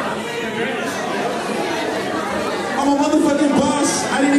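A man's voice through a handheld microphone and PA, with crowd chatter around it.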